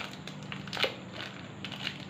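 Thin plastic wrapper crinkling as a lump of soft modelling clay is peeled out of it by hand: irregular crackles, with one louder crackle a little under a second in.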